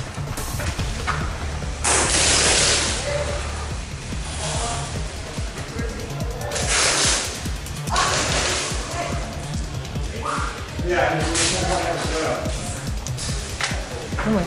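Airsoft electric guns firing several short full-auto bursts, each about half a second long, over background music with a steady beat.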